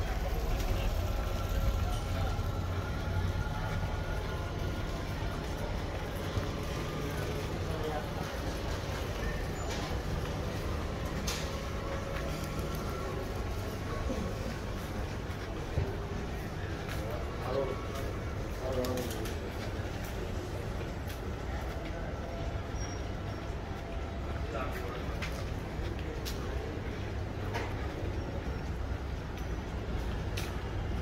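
Busy street ambience: a steady low rumble of city background with indistinct voices of passers-by and occasional short clicks.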